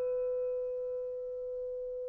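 Alto saxophone holding one long, soft, steady final note, with the piano's last chords dying away under it.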